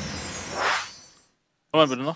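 Transition sound effect for the show's logo sting: a burst of hissing noise that swells and fades out about a second in. A man starts talking near the end.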